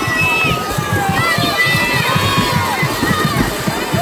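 Crowd of poolside spectators cheering and shouting encouragement during a swimming race, with many high voices calling over one another.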